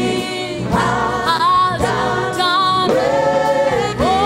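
Gospel worship singing by a small group of a woman and men singing together into microphones, in long held notes that waver.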